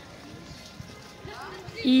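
Open-air promenade ambience: faint distant voices and footsteps on paving, with faint music in the background. A woman begins speaking near the end.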